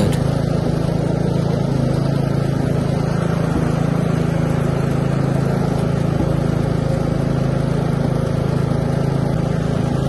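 Westwood S1300 ride-on mower's engine running at a steady, unchanging pitch while the mower is driven across a lawn.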